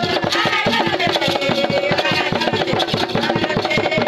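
Music with a fast, steady drum beat under a melody.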